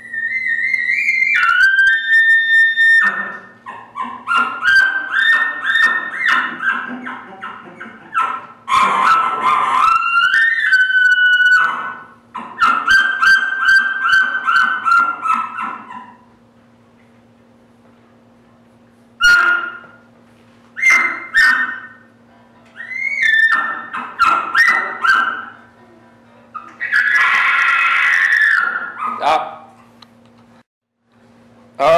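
Imitated bull elk bugling, blown through a long bugle tube. High whistled notes glide up and break downward, and runs of pulsing chuckles follow. The calls come in several bouts with a pause past the middle and a loud squealing call near the end.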